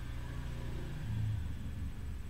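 A low steady rumble with a deep hum, swelling a little about a second in.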